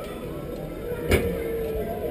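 Open-air ambience at a ride station, faint voices mixed with other background sound, with one sharp click about a second in.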